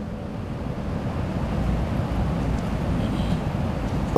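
A steady low rumbling noise with some hiss and no distinct events, slowly getting louder: background noise picked up by the lectern microphone during a pause in speech.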